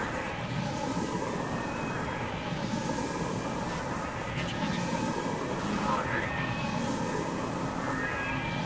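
Experimental glitch noise music: a dense, steady wash of noise with swells of high hiss every couple of seconds and a few brief clicks.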